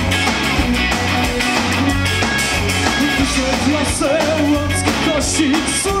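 Rock band playing live: drum kit, electric guitar and bass in a steady beat, with a voice singing over it from about halfway through.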